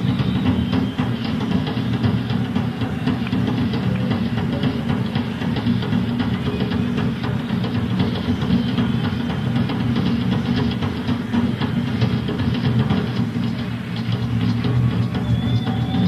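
Rock drum kit solo played live: continuous, dense, rapid drumming with a heavy low end from the toms and bass drum, heard on a raw bootleg tape recording.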